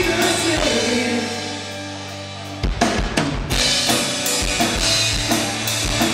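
Live rock band playing. The drums drop out for about two seconds, leaving held low notes, then come back in with a run of heavy hits, and the full band carries on.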